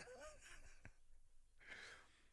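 Near silence, with a soft breath or sigh near the end.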